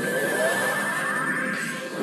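Cartoon energy-attack sound effect: a rising whine that climbs for about a second and a half over a steady wavering high tone and a rushing noise.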